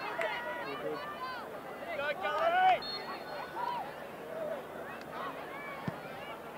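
Several people talking in the background, spectators' chatter from a touchline crowd.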